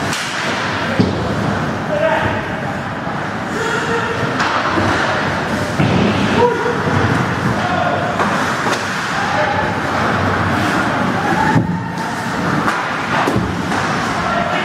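Ice hockey being played in an indoor rink: steady scraping of skates on ice and clacks of sticks and puck, with several sharp knocks, the loudest about a second in, and players' indistinct shouts echoing in the hall.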